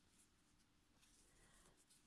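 Near silence: room tone, with faint small rustles of cotton yarn being worked on a crochet hook in the second half.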